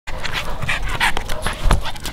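A pug panting, with quick noisy breaths about three a second.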